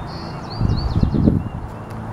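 A small bird chirping, a few short high notes and quick up-and-down glides in the first second, over a low rumble on the microphone that is loudest from about half a second to one and a half seconds in.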